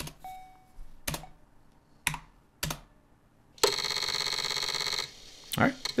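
A few keystrokes on a computer keyboard. Then, about three and a half seconds in, a loud, steady buzzy electronic beep lasts about a second and a half: the Commodore 64 Pascal system sounding its alert as it prompts to insert the disk to be formatted.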